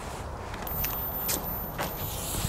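A few soft clicks and scuffs as a small firecracker is set down on an asphalt path and lit, over faint outdoor background noise.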